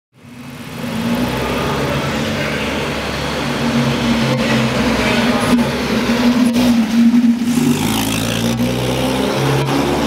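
Austin-Healey 100/4 BN2's four-cylinder engine running as the car drives past at low speed. The sound fades in over the first second.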